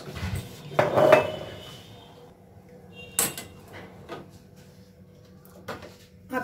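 Kitchenware being handled: a metal cooking pot clatters with a ringing note about a second in, then a sharp ringing clink at about three seconds and a few lighter knocks.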